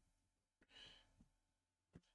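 Near silence, with one faint, short breath a little under a second in.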